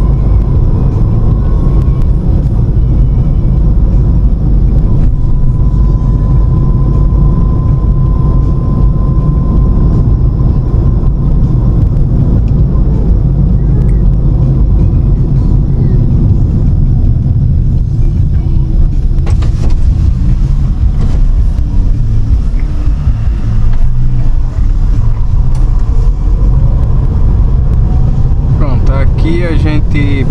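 Interior driving noise of a Ford Focus 2.0 with a four-cylinder engine, heard from inside the cabin while it cruises along a road: engine and tyre noise as a loud, steady low rumble.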